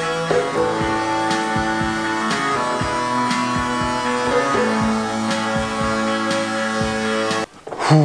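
Playback of a rock track in progress: held, distorted guitar notes layered in harmony over a drum beat, changing chord every couple of seconds. It stops suddenly near the end.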